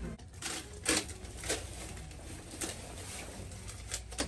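Footsteps and phone handling noise while walking on carpet: a few irregular clicks and scuffs over a low room hum, the loudest about a second in.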